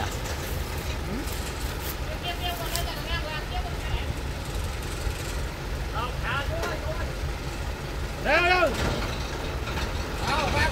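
Heavy truck engine idling steadily with a low rumble. Men's voices call out briefly several times over it, the loudest call about eight and a half seconds in.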